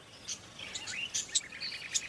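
Small birds chirping: scattered short high chirps, then from about one and a half seconds a fast, even trill of repeated notes.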